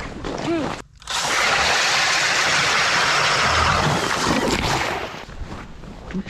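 DeWalt cordless drill spinning an ice auger through lake ice: a loud, steady grinding rush of the bit cutting ice that starts suddenly about a second in, runs about four seconds, then dies down.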